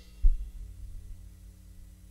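A single low bass-drum thump about a quarter of a second in, as the wash of a cymbal struck just before fades away, followed by a steady low hum.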